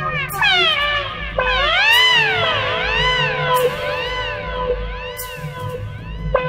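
Electronic music: an effects-processed electric trumpet line bends in swooping arcs that rise and fall about once a second, so it sounds almost like a cat's meow. Under it are held tones, a pulsing bass and a short cymbal-like hiss roughly every one and a half seconds.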